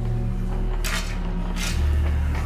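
Two short metallic clatters in a cattle barn, about a second in and near the end, from work with a fork along the steel feeding fence. A low, steady music drone runs underneath.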